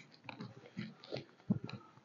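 Faint scattered handling noises at a wooden pulpit: light rustles and clicks, with a few soft knocks about one and a half seconds in.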